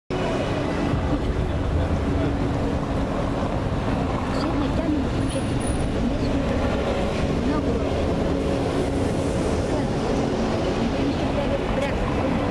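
Steady street traffic noise with a low rumble, with faint indistinct voices mixed in.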